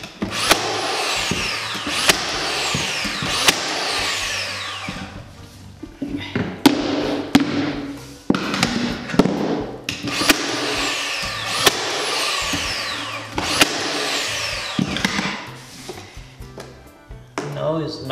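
Cordless nailer driving nails into a hardwood floorboard that sits higher than its neighbours, to bring it flush. Its motor whirs up and winds down again in several rounds, each with sharp shots as nails fire, roughly eight in all, pausing briefly between rounds.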